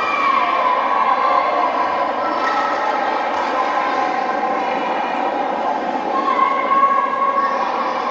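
Spectator crowd noise in a large sports hall: many voices talking and calling out at once, with some drawn-out calls, at a steady level.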